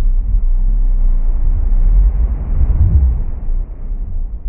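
Slowed-down, pitched-down sound effect of waves crashing against rocks in a cave, layered with a low rumble, played at a quarter speed: a deep, dark rush with no highs that swells about two to three seconds in and then eases off.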